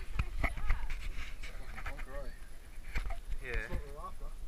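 Indistinct voices with a few scattered knocks and bumps on a boat deck.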